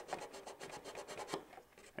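A Permagrit sanding dowel rubbed in quick, short back-and-forth strokes against the wooden trailing edge of a model sailplane wing, faint and stopping about one and a half seconds in.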